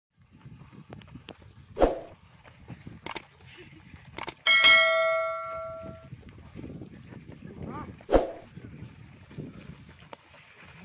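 Footsteps of several people running on a gravel track, with a few sharp knocks. Just before the middle comes one loud metallic clang that rings on for about a second and a half.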